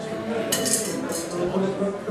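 Something dropped into an oversized glass goblet clinking sharply against the glass, twice, about half a second and a second in, over background voices.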